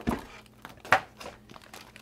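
Plastic packaging crinkling as a power brick and its bagged cable are handled and pulled free, with a sharp crackle about a second in.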